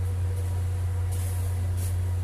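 A steady low hum with a faint, thin higher tone over it, unchanging, and a couple of brief soft rustles about a second in and near the end.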